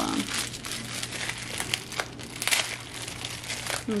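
Clear plastic packaging crinkling and crackling in irregular bursts as it is pulled open by hand to free a light bulb.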